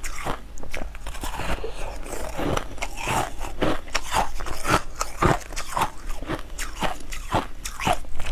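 Crunching and chewing of a chunk of crushed ice soaked in purple juice: a rapid, irregular run of crisp crackling crunches as pieces are bitten off and chewed.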